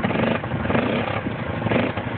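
Four-wheeler ATV engine running with a rapid, even pulsing beat while the quad is bogged down in deep mud.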